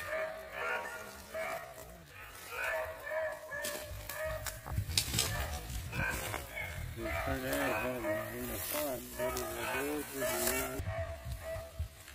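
Men's voices calling out at a distance across open fields, with low rumbling noise and scattered rustles and clicks from about halfway through.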